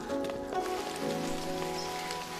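Rain falling steadily, with scattered drops, under background music of long held notes.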